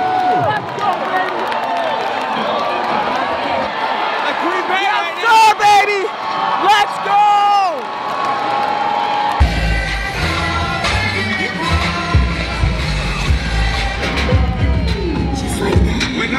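A crowd of football fans cheering and yelling, with the loudest shouts about five to seven seconds in. About nine seconds in, bass-heavy music with a steady beat starts over the crowd noise.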